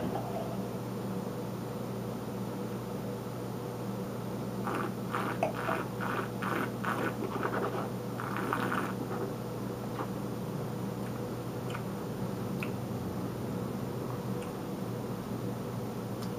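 A person slurping wine, drawing air through a mouthful of it to aerate it while tasting: a quick series of short slurping sounds that starts about five seconds in and lasts about four seconds, over a steady room hum.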